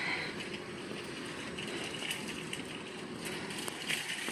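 Steady, quiet outdoor ambience of a parking lot: an even wash of distant traffic and surroundings, with a light high hiss joining about halfway through and a few faint ticks.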